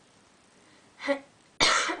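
A woman with a cold clears her throat: a short, soft throat sound about a second in, then one sharp, loud cough near the end.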